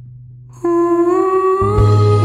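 Slow, sad song: a held note and a low drone fade away, then about half a second in a new sustained note enters and bends slightly upward. Near the end, loud low bass notes and fuller accompaniment come in.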